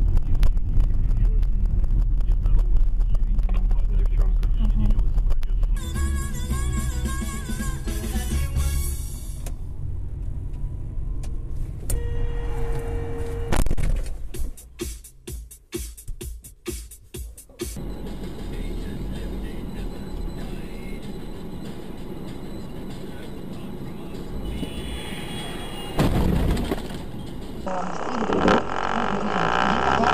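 Dash-cam audio that changes from clip to clip: a car's engine and road rumble, voices and music. One stretch holds a short steady tone, and another holds a run of sharp clicks.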